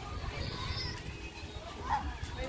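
Faint distant voices, some high like children calling, over a steady low rumble.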